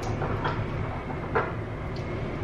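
Bathroom air vents running, a steady low hum and rush of air. A couple of light clicks sound over it.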